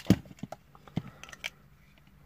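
Hard plastic parts of a Transformers Earthrise Deluxe Allicon action figure clicking and knocking as they are handled and slotted into place: one sharp click just after the start, then a few lighter clicks over the next second and a half.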